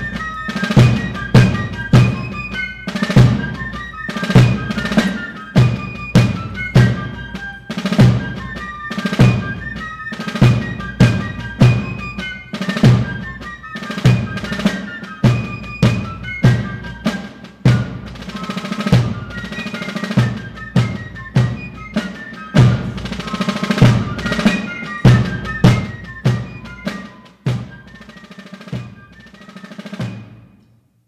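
Fife and drum corps playing a march: fifes carry a high melody over snare drums on rope-tension drums and a bass drum striking about once a second. The music ends near the close.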